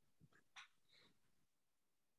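Near silence: room tone over an open call, with a couple of faint short sounds in the first second.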